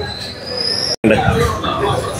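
Outdoor background noise with crowd chatter and a thin, high squeal that rises steadily in pitch, cut off abruptly about a second in; more chatter follows.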